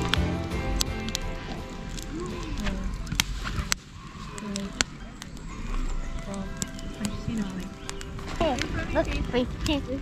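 Wood fire crackling in a steel fire pit, with sharp snaps scattered throughout, under background music. High children's voices come in near the end.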